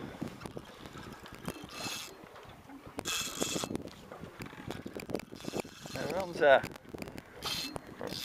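Fishing reel worked against a big fish on the line, its mechanism whirring in several short spells among small handling knocks. A brief voice comes in about six and a half seconds in.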